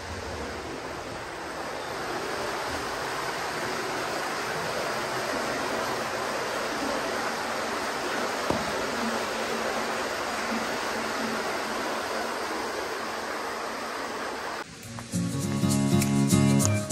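Steady rush of water at a water mill's waterwheel, an even noise with no rhythm. Near the end it gives way to background music.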